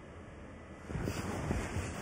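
Low rumbling rustle of clothing and cushion fabric against a body-worn microphone as a person shifts position on a couch. It grows into irregular rubbing and soft thumps about a second in.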